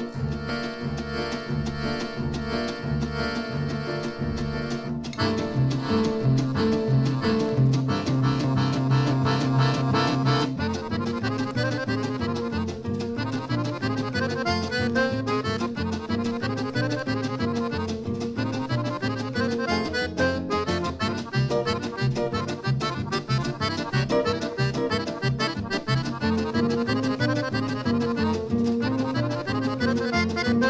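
Accordion playing a fast instrumental tune over a steady rhythmic beat, from a 1952 recording. The arrangement changes about five seconds in and again about ten seconds in.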